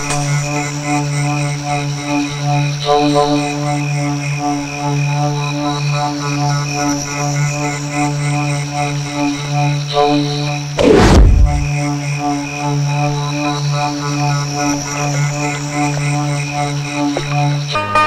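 Tense film background music: a low steady drone under a repeating pulsing pattern, with one loud falling whoosh about eleven seconds in.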